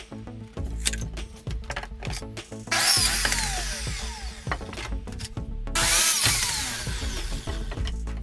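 A DeWalt sliding compound miter saw cuts through wooden boards twice, about three and six seconds in. Each cut is a loud burst that ends with the blade's whine falling in pitch as it spins down, over background music.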